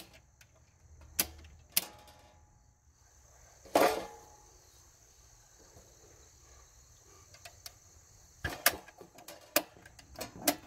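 A few sharp clicks and knocks against a quiet background: two light ones early, a louder knock about four seconds in, and a quick cluster near the end.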